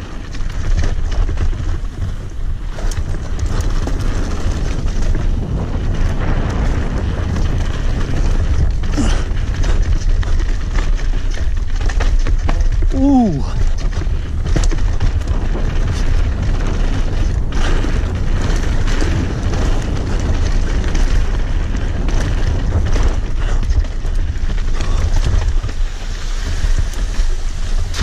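Wind rumbling on the microphone of a helmet camera during a fast mountain-bike descent, mixed with the rattle and knocks of the full-suspension enduro bike's tyres, chain and frame over dirt, roots and rock. A short falling vocal cry about thirteen seconds in.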